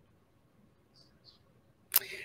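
Near-silent room, then a single sharp click just before the end, followed by a brief breathy noise.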